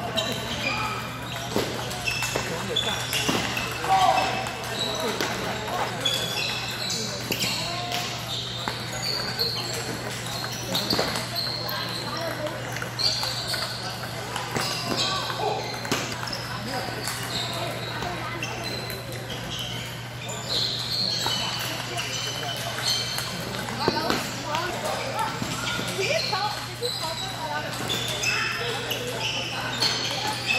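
Table tennis balls clicking off bats and tables in rallies, from this and neighbouring tables in a busy hall, over a steady background of many voices chattering and a low hum.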